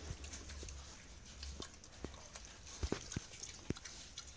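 Pigs eating watermelon scraps on a concrete floor: scattered short crunches and clicks of chewing and trotters, coming more often in the second half.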